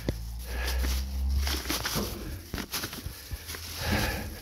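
Plastic bags rustling, with light clicks and knocks, as a potted banana seedling in its polybag is handled in a plastic wheelbarrow. A low rumble runs under the first second and a half.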